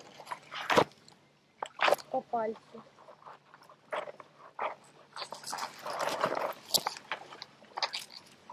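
Dry grass and leaf litter rustling and crackling close by, with several sharp snaps, and a short pitched vocal sound about two seconds in.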